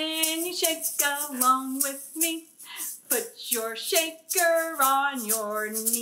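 A woman singing a children's song unaccompanied while shaking a plastic egg shaker in a steady beat. She holds a long lower note near the end.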